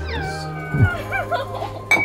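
A woman's high, wavering whimper of pain as sea urchin spines are picked out of her foot, over background music that stops a little under a second in. A sharp clink near the end.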